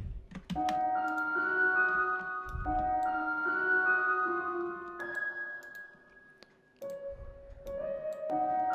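Omnisphere synth melody played back in FL Studio: held notes that step to a new pitch every second or so over a low bass note. The notes fade out about five seconds in, and new ones sound again near the end. A few faint clicks are heard.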